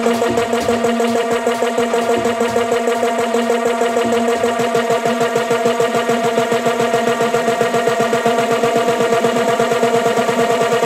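House-music DJ mix in a build-up: a held synth chord over a rapid drum roll whose hits come faster and faster, with the deep bass dropping out about halfway through.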